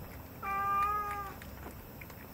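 A domestic cat meows once: a single drawn-out meow of about a second, starting about half a second in, held at a steady pitch and dipping slightly at the end.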